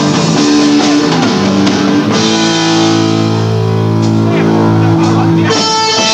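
Live rock band playing loud, led by electric guitars over bass. Busy playing gives way about two seconds in to a chord held for a few seconds, then a new chord comes in near the end.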